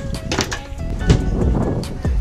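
Music playing: sustained notes with a few sharp percussive hits.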